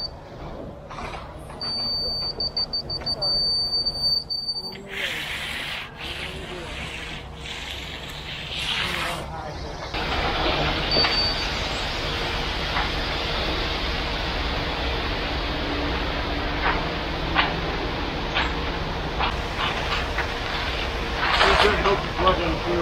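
A laser level receiver on a grade rod sounds a high steady tone for a few seconds near the start, the solid tone that means it sits on grade. From about ten seconds in, a ready-mix concrete truck runs steadily while wet concrete pours from its chute and is raked out, with scraping now and then.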